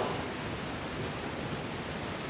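Steady, even hiss of background noise with nothing else standing out.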